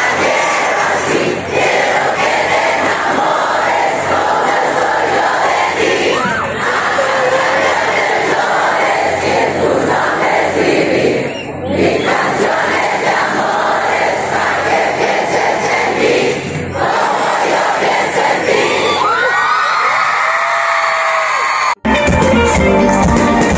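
A large concert crowd cheering and screaming, with a few shrill screams gliding up and down in pitch near the end.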